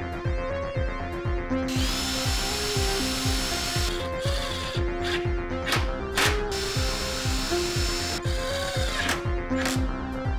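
Cordless impact driver running in short bursts, driving screws through a particle-board shelf into a strip of pine, with a high-pitched motor whine. Background music with a steady beat plays throughout.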